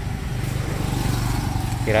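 A motorcycle engine idling with a steady low rumble.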